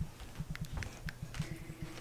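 Footsteps on an indoor floor mixed with handling knocks from a hand-held phone, a string of soft, irregular low thumps with a few light clicks over a faint steady hum.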